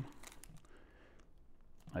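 Faint handling sounds of packing tape at a CPU heatsink: quiet rustling with a few light ticks.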